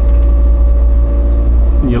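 Steady low drone of a Nordhavn N51 trawler yacht's diesel engine under way, heard from inside the wheelhouse, with a steady hum on top.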